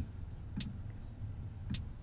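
Two short, sharp clicks about a second apart over a low, steady hum.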